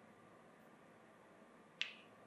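Near silence broken near the end by one short, sharp click.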